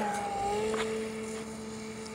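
Electric motor and propeller of a Flite Test Edge 540 RC plane running at steady high throttle on its takeoff roll: a steady hum that fades as the plane moves away.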